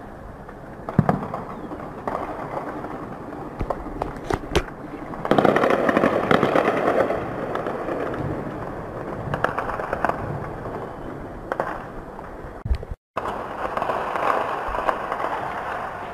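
Distant gunfire from street clashes: scattered sharp cracks, including a quick cluster about four seconds in. Then a sudden loud rumble from a distant blast swells about five seconds in and dies away over several seconds, with a steady rumble under a few more shots.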